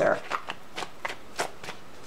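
A deck of tarot cards being shuffled by hand: a run of irregular clicks and rustles as the cards slide and flick against each other.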